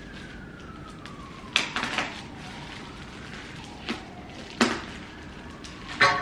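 Scissors cutting into a plastic poly mailer bag: a handful of short, sharp snips and crinkles, the loudest about one and a half and four and a half seconds in.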